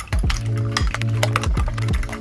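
A metal fork whisking eggs in a ceramic bowl, with quick irregular clicks as the fork strikes the bowl, over background music with held notes.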